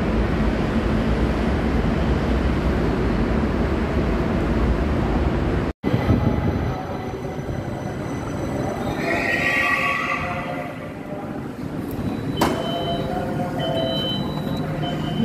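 LRT Jabodebek light-rail train arriving at the platform: a loud, steady rumble and hiss as it comes in, then a quieter, pitched whine as it slows and stops. Near the end a click is followed by repeated high beeps as the platform screen doors and train doors open.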